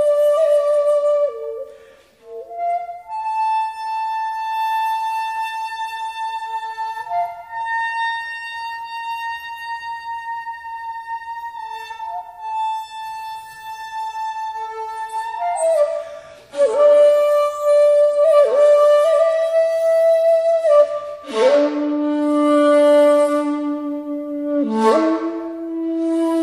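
Solo shakuhachi, the Japanese end-blown bamboo flute, playing long held notes. One high note is held for about nine seconds. From about halfway, louder phrases start with rushes of breath noise and sharp pitch bends, and the piece settles onto two low held notes near the end.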